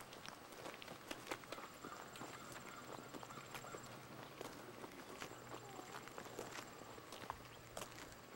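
Footsteps of a person walking, picked up by a handheld camcorder's built-in microphone: irregular small clicks and scuffs over a faint steady low hum.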